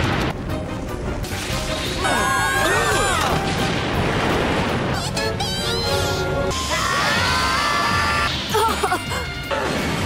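Cartoon action soundtrack: dramatic music over crashing and rumbling impact effects. Bending pitched cries come in a couple of seconds in and again near the end, and high whistling glides sound midway.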